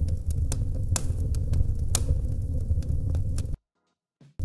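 AI-generated fireplace sound: a steady low rumble with frequent sharp crackles and pops scattered through it. It cuts out abruptly to silence about three and a half seconds in, as the preview playback stalls.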